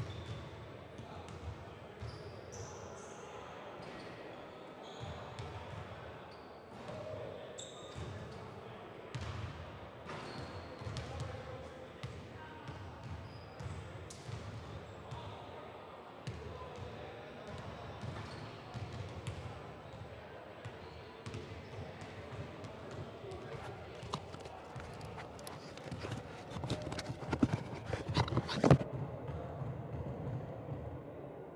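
Basketballs bouncing on a hardwood gym floor during warm-ups, with indistinct voices in the background; a run of louder bounces comes near the end.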